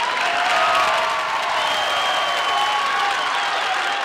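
Studio audience applauding and cheering steadily, with scattered shouts rising above the clapping.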